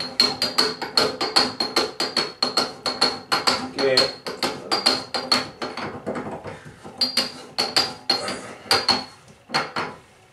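Rapid metallic clicking, several clicks a second with a faint ring, as a tub drain tool is turned by hand to screw the drain flange down into the drain. The clicks come more sparsely after about six seconds.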